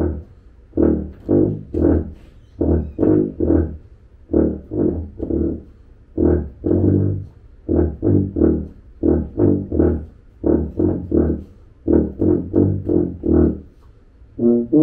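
Tuba playing short, detached low notes in quick clusters of two to four, with brief pauses between the clusters.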